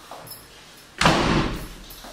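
A wooden interior door with glass panels shut firmly about a second in: one loud thud that dies away over most of a second.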